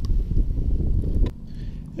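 Wind buffeting the camera's microphone outdoors, a low uneven rumble that eases off in the second half.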